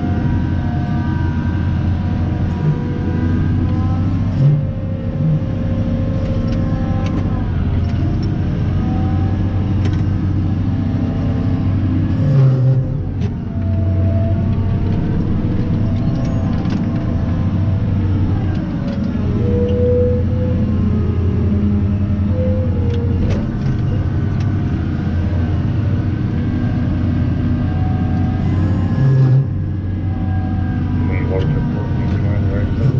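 Caterpillar 994 wheel loader's V16 diesel engine heard from inside the cab, running under load and revving up and down while the machine works, with a few short knocks.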